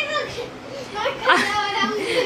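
Children's high-pitched voices squealing and calling out in rough play. One burst trails off just after the start, and another begins about a second in.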